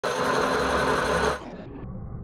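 Lathe skimming the gasket face of an aluminium motorcycle cylinder head: a loud, steady machining whirr of the spinning head against the cutting tool. It cuts off abruptly about one and a half seconds in, leaving a quieter low hum.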